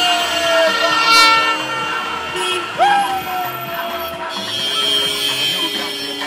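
Vehicle horns tooting in a street celebration over loud music with a steady beat, with two loud sliding blasts, one at the start and one about three seconds in.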